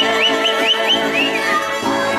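Mariachi violins playing, with five quick upward-sliding high notes in the first second and a half over steadily held lower notes.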